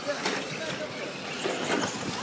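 Radio-controlled cars racing on a dirt track, their motors heard as a steady hum with brief rises and falls in pitch, under background voices.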